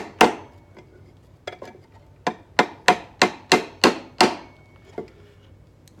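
Small hammer tapping a thin nail into the wooden frame rail of an Orff metallophone to pin its rubber bar tubing. One sharp tap just after the start, a couple of light ones, then a run of about seven quick taps, some three a second, each with a brief ring.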